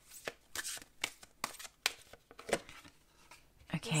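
A deck of oracle cards being hand-shuffled: a run of short, soft card slaps, about two or three a second.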